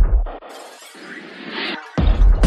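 Techno track in a short break: the kick drum drops out about a third of a second in and a noisy, crackling sound effect fills the gap, growing brighter toward the end before the beat comes back.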